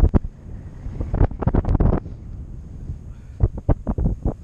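Airflow buffeting the microphone of a camera on a paraglider in flight: wind noise rising and falling in irregular loud gusts.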